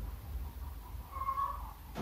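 A single short animal call, about half a second long, a little past a second in, over a steady low hum; a brief click comes at the very end.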